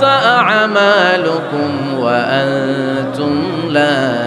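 A man's voice reciting a Quran verse in melodic chant (tilawah), drawing out long sustained notes with slow, ornamented rises and falls in pitch.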